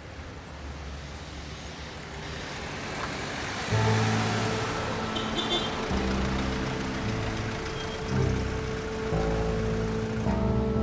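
A car approaching, its noise growing louder, with background music of held notes coming in about four seconds in and carrying on over it.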